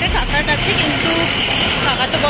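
Road traffic passing close by on a city street, a large truck among it, with a steady hiss for about a second in the middle and a low rumble underneath.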